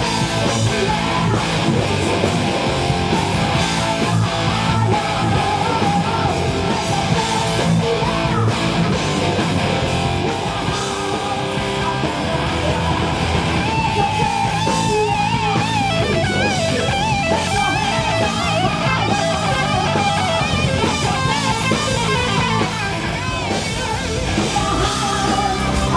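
Heavy metal band playing live, loud and dense, with distorted electric guitars, bass and drums. From a little past halfway a wavering lead melody rides on top.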